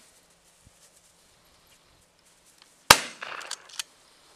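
A single gunshot about three seconds in, with a short ringing tail and a couple of smaller cracks after it.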